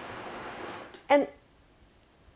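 Vitamix blender running on its lowest setting, a quiet, even whir as it breaks up rolled oats in water. It fades out about a second in as it is switched off, leaving near silence.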